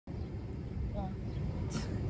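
Steady low outdoor rumble, with a single sharp click a little before the end.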